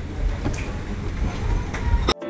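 Steady low rumbling background noise with a few faint clicks.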